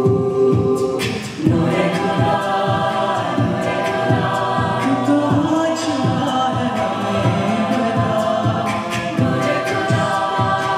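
Mixed a cappella group singing with a male lead: a held vocal chord breaks off just after a second in, and the voices come back in over a steady beat of vocal percussion.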